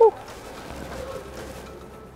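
A woman's short "whew" with a falling pitch, loudest right at the start. After it there is only faint, steady background noise.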